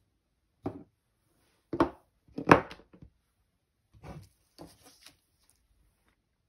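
Irregular knocks and clatters of craft supplies, including a clear acrylic stamp block, being picked up and set down on a tabletop: about eight short hits, the loudest about two and a half seconds in.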